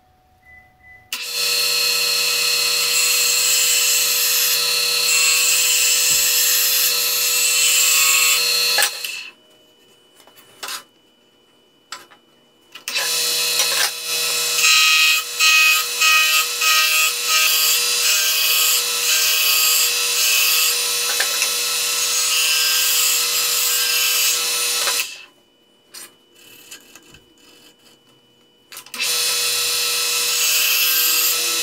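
A turning gouge cutting into a wood blank spinning on a Central Machinery mini lathe, with a loud steady hiss of shaving over the hum of the machine, as the square blank is roughed down to a cylinder. The cutting comes in three long passes, about eight and twelve seconds long, with quiet breaks of a few seconds between them.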